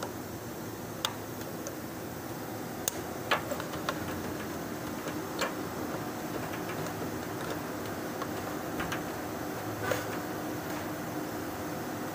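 A handful of sharp, irregular clicks and taps from hands working the plastic and metal parts of an Isuzu D-Max fuel pump and level sender assembly, over a steady low hum.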